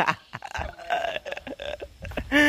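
A man laughing: a run of short, broken vocal sounds.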